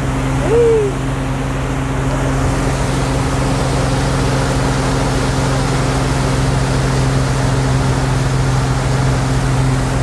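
Motorboat engine running steadily at speed, a constant low drone over the rush of the churning wake. A brief voice sounds about half a second in.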